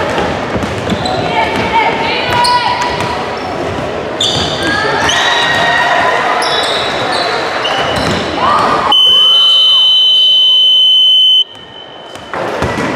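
Basketball game on a gym's hardwood court: sneakers squeaking, a ball bouncing and players calling out. About nine seconds in, a loud, steady scoreboard buzzer sounds for about two and a half seconds and then cuts off, stopping play.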